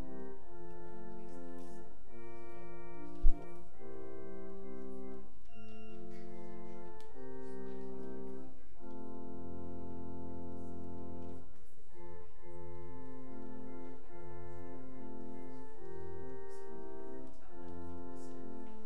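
Church organ playing Christmas carols in slow, sustained chords, with deep pedal bass notes joining about nine seconds in. A single brief thump about three seconds in.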